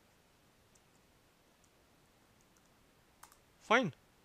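A few faint computer keyboard clicks over near silence, with one sharper keystroke about three seconds in: the keys that save and close a vi file and return to the command prompt.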